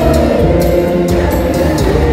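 Church choir and congregation singing a hymn with musical accompaniment and a steady beat.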